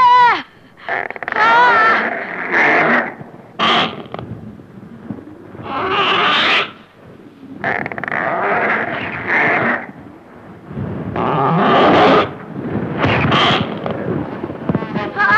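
A woman screaming in terror, then a giant monster's roar sound effect repeated in several long bursts, a second or two each.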